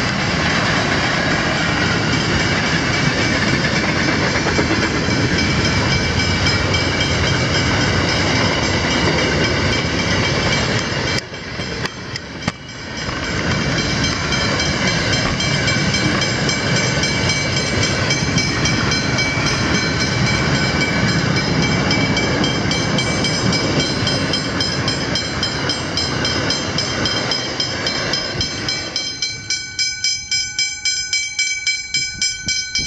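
Pacific National freight train's wagons rolling over the level crossing with a steady clatter on the rails, while the crossing's Westinghouse hybrid bells ring over it. Near the end the train noise falls away and the rapid bell strikes stand out.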